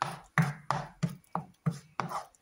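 Wooden spatula stroking and scraping through a thick curry paste in a nonstick frying pan, about three quick, even strokes a second.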